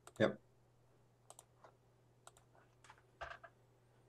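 A few faint, scattered computer clicks, keys or mouse buttons, as the next image is picked from a folder of thumbnails.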